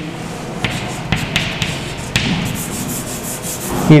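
Chalk writing on a chalkboard: scratchy strokes with several short taps as letters are written.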